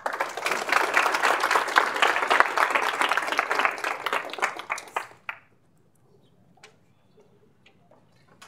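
Audience applauding: dense clapping that dies away about five seconds in, followed by a few scattered knocks and clicks.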